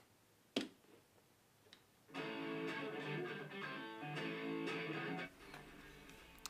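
A guitar strummed for about three seconds, starting about two seconds in and stopping abruptly, preceded by a short click about half a second in.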